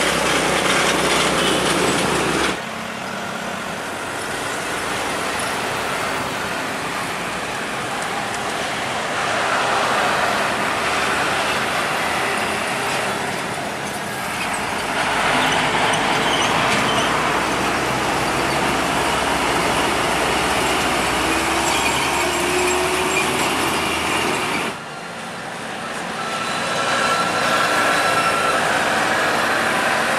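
Heavy trucks driving past on a busy road, with engine and tyre noise over continuous traffic. The sound changes abruptly twice, about two and a half seconds in and again near twenty-five seconds.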